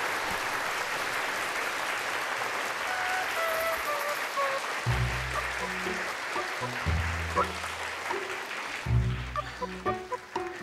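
Audience applauding over background music. The clapping thins out, and deep bass notes of the music come in about five seconds in.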